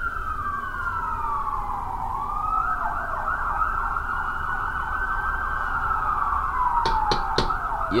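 Police-style siren wailing: its pitch falls slowly, rises again with a quick warble, holds high, then falls slowly once more. A low rumble runs underneath, and a few sharp taps come near the end.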